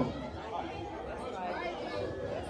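Faint chatter of several people talking at a distance in a large, echoing hall, with no one speaking close to the microphone.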